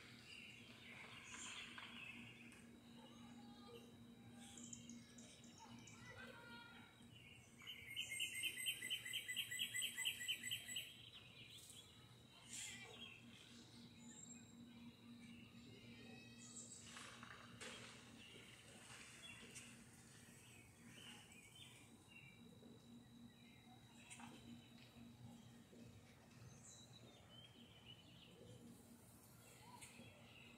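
A bird calling: scattered short chirps, and about eight seconds in a fast trill of repeated notes lasting about three seconds, the loudest sound, over a faint steady hum.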